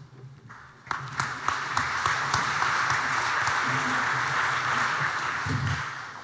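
Audience applauding in a hall. The applause starts about a second in, holds steady, and fades away near the end.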